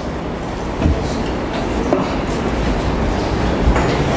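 Steady low rumbling noise picked up by a handheld microphone, with a few faint knocks.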